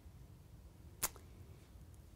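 Quiet room tone with a low hum, broken by one short, sharp click about a second in.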